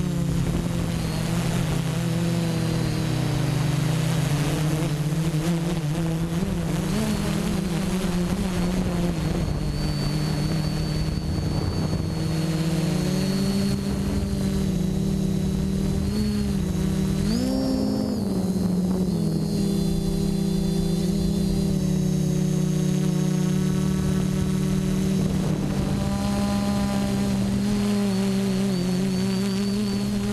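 Quadcopter's electric motors and propellers humming in flight, heard from the GoPro on board: several close tones whose pitch shifts as the throttle changes, with a brief rise about seventeen seconds in.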